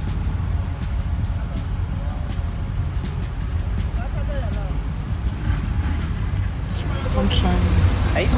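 Steady low rumble of a vehicle's engine and running gear heard from inside the cabin, moving in slow traffic, with faint voices in the middle and talking starting near the end.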